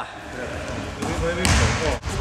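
Basketball bouncing on a sports-hall floor during a game, with a sharp bounce about one and a half seconds in, among players' voices echoing in the hall.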